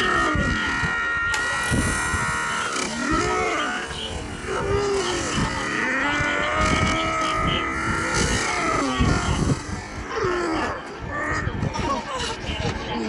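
Soundtrack of an animated cartoon episode played back at one-and-a-half speed. Long held high notes run over lower sliding tones, with no words.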